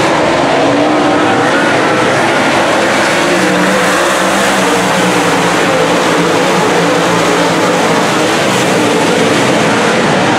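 A pack of dirt late model race cars running at racing speed, their V8 engines loud and continuous, with several overlapping engine notes rising and falling as the cars work through the corners.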